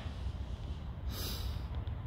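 A woman sniffs once through the nose, a short hissing sniff about a second in, as she holds back tears. A steady low rumble runs underneath.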